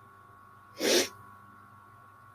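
A single short, sharp burst of breath from a person, about a second in, over a faint steady hum.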